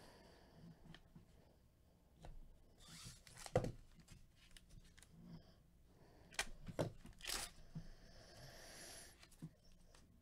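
Plastic trading-card pack wrapper being torn open and crinkled by gloved hands: several short rips, the sharpest about three and a half seconds in, and a longer tear near the end.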